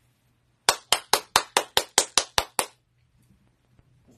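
Hands clapping quickly, about ten sharp claps at about five a second, starting about a second in and stopping after two seconds.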